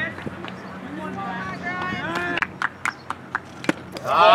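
Voices of spectators and players calling out across the field, then a quick run of hand claps, about five a second, in the second half.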